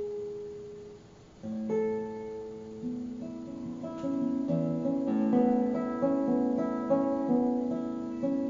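Solo classical guitar played fingerstyle. A held note dies away and there is a short pause about a second in, then single plucked notes start again and build into a quicker, fuller run of notes.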